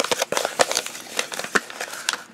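Folded paper instruction leaflet being unfolded and handled: a quick, irregular run of paper crackles and rustles.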